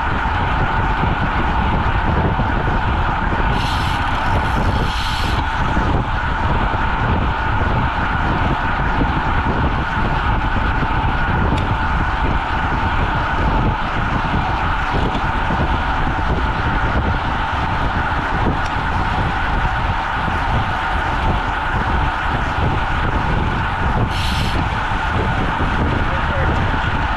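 Wind rushing over a bike-mounted camera's microphone while a road bike rides at about 25 mph, with steady road noise from the tyres on the pavement. A brief high hiss comes twice, a few seconds in and near the end.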